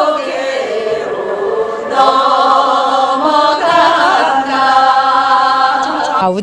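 A group of Korean women singing a traditional song together in one voice, with long held notes and sliding pitches.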